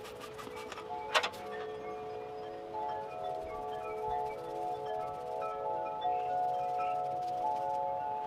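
Chime-like ringing tones at several pitches, held and overlapping, with new notes coming in every second or so. A few sharp clicks sound in the first second and a half, the loudest about a second in.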